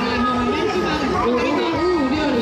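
A woman talking into a handheld microphone, her voice amplified over a stage PA.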